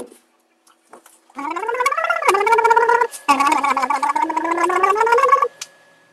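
A man gargling with his voice sounding through the water: two long gurgling notes with a short break between, the first rising and then holding, the second dipping and then rising again. A sharp click sounds right at the start.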